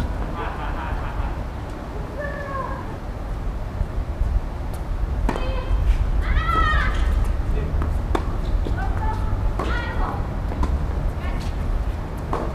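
Tennis doubles rally: several sharp racket-on-ball strikes a second or two apart, the rally quickening near the end. Short vocal calls from the players rise and fall in pitch between the shots, over a steady low rumble.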